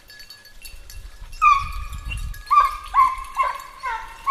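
Hunting hounds baying in long drawn-out howls: one about a second and a half in, then four shorter ones close together near the end.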